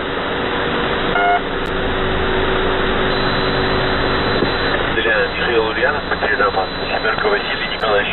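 Shortwave radio reception of the Russian military station 'The Pip' on 3756 kHz, heard through a single-sideband receiver. Two short beeps of the station's marker come near the start, about a second apart. Then there is steady static hiss with low hum tones, and a radio voice comes through a little after halfway.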